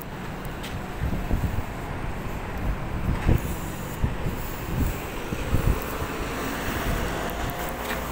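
Wind buffeting a handheld phone's microphone in irregular low rumbles, over steady outdoor street noise.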